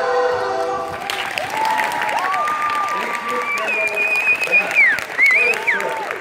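The skating program's recorded music ends about a second in, followed by audience applause, with high sustained whistles and cheering over the clapping.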